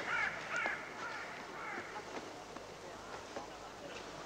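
Crows cawing: a run of several harsh caws in the first two seconds, then fainter, scattered calls.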